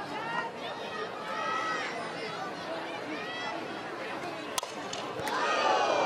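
Softball crowd chatter and shouting fans, then a sharp crack of a bat hitting the ball about four and a half seconds in, and the crowd's voices swell as the ball goes foul toward the dugout.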